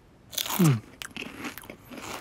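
A person bites into a crunchy snack with a loud crunch, then chews with small crackling crunches. A short falling "mm" from the voice sounds during the first bite.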